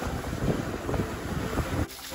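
Wind buffeting the microphone over waves breaking on a beach, cutting off shortly before the end.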